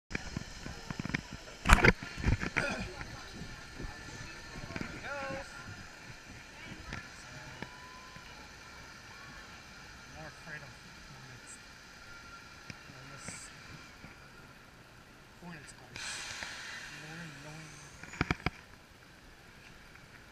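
Loud knocks and rubbing of a hand-held camera being handled about two seconds in, then a low steady background with faint distant voices while the log flume boat moves along its channel, and a few more sharp knocks near the end.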